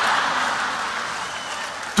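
Live audience applauding after a punchline, an even clatter of many hands that slowly dies down toward the end.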